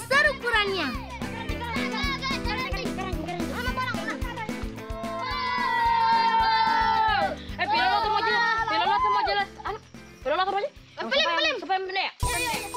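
Children's voices talking over background music.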